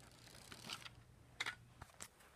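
Near silence with a few faint soft clicks and rustles of handling, the clearest about one and a half seconds in.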